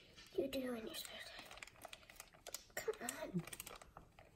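Scissors snipping into a thin black plastic bag, with short sharp clicks of the blades and crinkling of the plastic. A person's voice murmurs briefly twice, about half a second in and about three seconds in.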